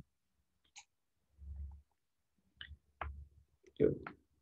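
A few faint, short sounds from a person at a computer during a pause in speech: a brief low murmur about a second and a half in, then short clicks and mouth sounds, the loudest just before the end.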